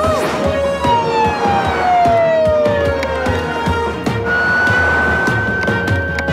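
Upbeat cartoon chase music with a cartoon police siren wailing in quick up-and-down swoops at the start, followed by long sliding glides in pitch: a slow fall, then a gentle rise near the end.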